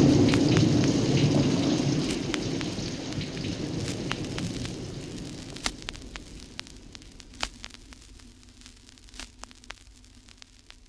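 Rain-and-thunder storm sound effect from an old vinyl record, fading out steadily over the seconds. As it dies away, scattered clicks and pops of the record's surface noise are left.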